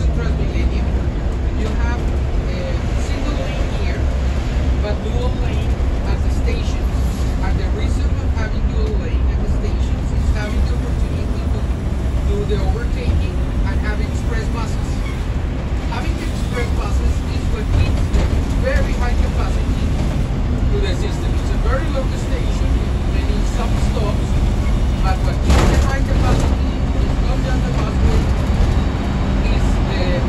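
Cabin noise of a Transmilenio bus rapid transit bus under way: a steady low engine and road rumble, with indistinct voices over it and a single sharp knock late on.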